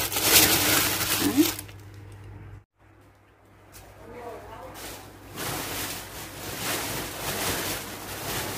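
Thin plastic bag crinkling and rustling as a hand digs through it. After a short break, a large sack rustling as it is opened and handled.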